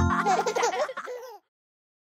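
Cartoon children's voices laughing and giggling over the last held note of a children's song, both fading out about a second and a half in, followed by silence.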